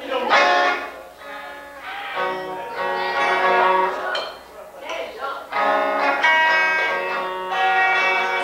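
Guitar played in short phrases of held notes and chords, with brief breaks between them.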